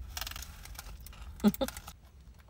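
Faint handling noise while eating, then two short sounds from a woman's throat about one and a half seconds in, as she brings a glass bottle of Coke up to drink.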